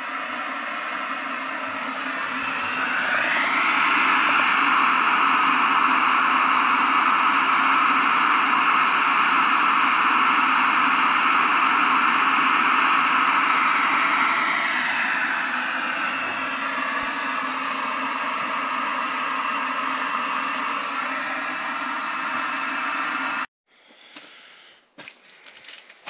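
Canister camp stove burner hissing steadily under a steaming pot of water near the boil. The hiss grows louder for a stretch, eases off, then cuts off suddenly near the end, leaving faint rustling.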